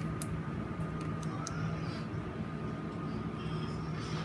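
A few light clicks of fingernails picking at the plastic tabs of a cardboard toy box, over a steady low hum.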